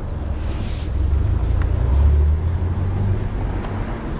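A low rumble that swells to a peak about two seconds in and then eases off, with a brief hiss about half a second in.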